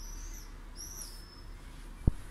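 A small bird chirping twice: two short, high-pitched notes about three-quarters of a second apart, faint over a low room hum.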